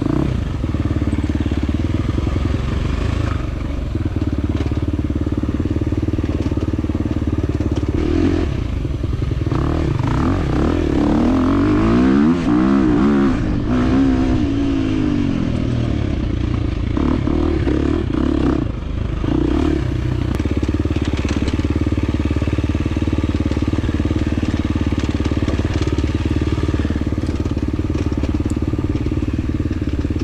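2023 KTM 350 XC-F's single-cylinder four-stroke engine running hard on the throttle as the dirt bike is ridden. The revs climb and drop repeatedly in quick succession about a third of the way in.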